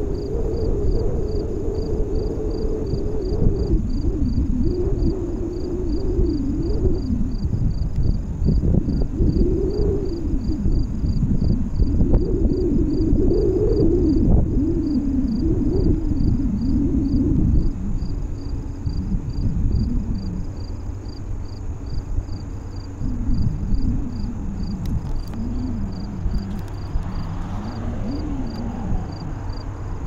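A low, wavering rumble with a hum that rises and falls every second or two, easing somewhat after about eighteen seconds. Under it, insects chirp in a steady pulse a couple of times a second.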